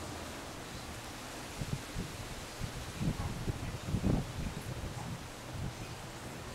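Wind through palm fronds: a steady rustling hiss, with low gusts buffeting the microphone about three and four seconds in.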